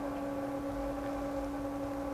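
Faint steady hum: one low tone with fainter overtones above it over light background hiss.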